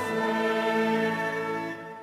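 A choir sings long held chords of sacred music with instrumental accompaniment. The chord fades away near the end.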